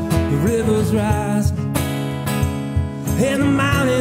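Live acoustic music: an acoustic guitar strumming chords, with a sharp percussive hit about a second and a half in.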